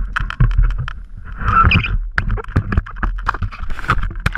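Water splashing and gurgling around a camera as it goes under the sea surface, with many irregular knocks and clicks over a low rumble; the sound starts suddenly and loud.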